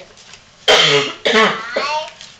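A person coughing: three voiced coughs about half a second apart, starting a little over half a second in, the first the loudest and sharpest.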